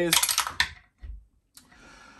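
Small game pieces clattering on a tabletop in a quick burst of clicks, followed by a soft low thump about a second in.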